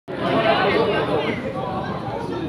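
Indistinct chatter of several people talking at once, a little louder in the first second.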